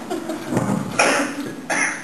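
A person coughing a few times, in short rough bursts.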